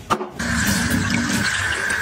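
A kitchen mixer tap is turned on with a click, then water runs steadily from the tap into a pitcher.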